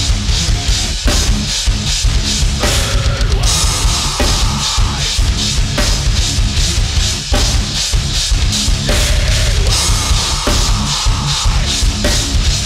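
Pearl Master Custom drum kit with Sabian cymbals played along to a heavy metal recording: fast, unbroken bass drum strokes under a steady cymbal wash, over a distorted riff whose chords change every second or two.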